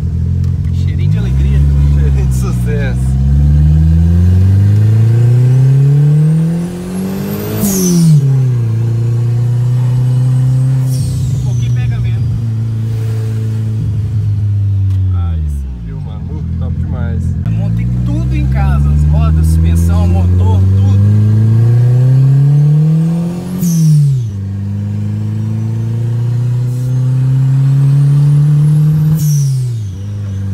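Turbocharged VW Voyage engine heard from inside the cabin, pulling hard under acceleration: the revs climb for several seconds, drop sharply at a gear change, then hold steady. This happens twice. A thin high whistle rises along with the revs.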